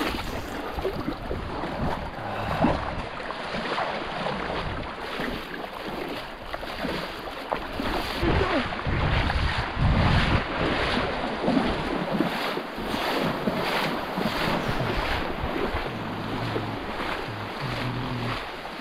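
Small Baltic Sea waves washing in the shallows, with wind gusting on the microphone.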